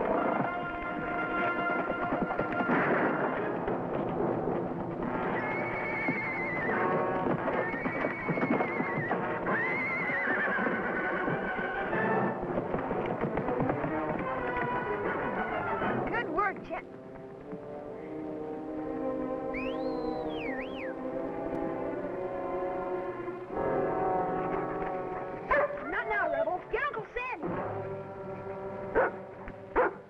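Orchestral background music playing throughout, with a horse whinnying a few times over it in the first half.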